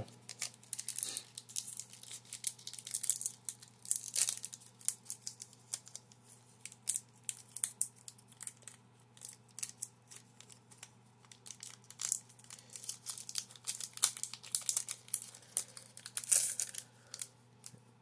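Foil wrapper of a Magic: The Gathering Unstable booster pack crinkling and tearing as it is opened by hand, in irregular crackles that swell about four seconds in and again near the end.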